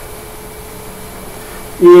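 A pause in a man's speech filled with steady background hiss and a faint steady hum. A man's voice comes back in near the end.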